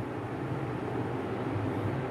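Marker pen writing on a whiteboard, a steady scratchy noise over a low background hum.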